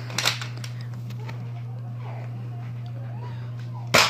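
A spring-powered toy dart blaster fires once just before the end with a sharp snap. Handling noise comes shortly after the start, over a steady low hum.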